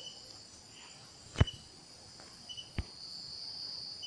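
Crickets chirping steadily in the background, a continuous high-pitched trill with faint repeating pulses. Two sharp clicks cut through, about one and a half and about three seconds in.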